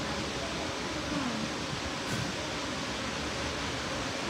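Steady rushing background noise with no distinct event.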